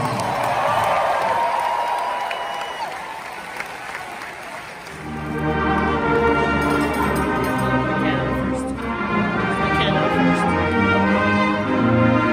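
Crowd cheering and applauding, dying down over the first few seconds, then about five seconds in a pep band starts playing brass-led music.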